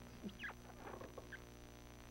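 Quiet pause with a faint steady electrical hum. About a third of a second in there is one brief, faint, falling squeak, and a few soft clicks follow.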